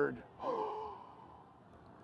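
A single short, sigh-like voice sound, falling in pitch, about half a second in, just after a spoken word ends.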